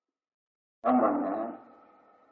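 Silence, then about a second in a man's voice gives one drawn-out utterance that trails away, speech on an old sermon recording.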